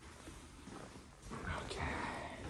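Quiet room tone, then a voice saying "okay" near the end.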